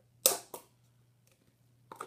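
Two sharp taps about a third of a second apart, the first the louder, and another shorter tap near the end, over a faint steady hum.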